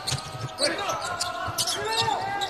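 A basketball being dribbled on a hardwood court, a run of low thuds.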